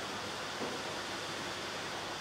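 Steady, even hiss of room noise with no other distinct sound.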